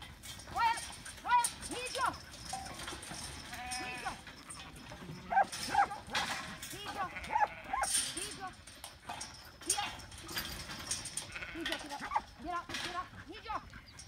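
A large mob of sheep bleating over and over, many overlapping calls, while being worked through steel yard pens.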